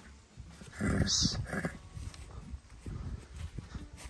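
A Mangalarga Marchador stallion gives one snort through its nostrils about a second in, a noisy blow lasting about a second.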